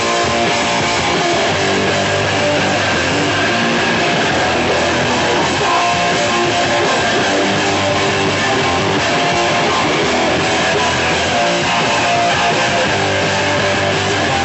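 Hardcore punk band playing a song live, loud and unbroken, with electric guitars to the fore.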